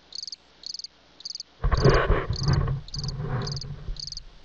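Night insects chirping in short, high, evenly spaced trills, about two a second. About a second and a half in, a loud rough noise, heaviest low down, covers them for about two seconds.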